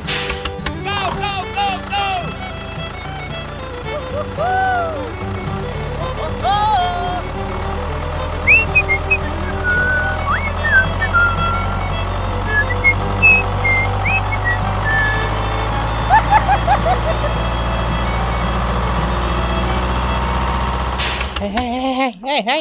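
Background music over a truck engine running, a steady low rumble that comes in about a third of the way through and cuts off near the end.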